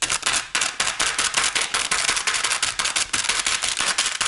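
Plastic film lid of a ready-meal tray being stabbed over and over with a fork to pierce it for the microwave. The sound is a rapid, unbroken run of sharp crackling pops, several a second, from the film and the tray.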